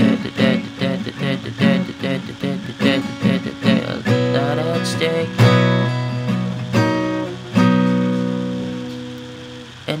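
Acoustic guitar with a capo strummed, starting on E minor and A: quick strokes for about four seconds, then a few longer held chords, the last one left ringing and fading away near the end.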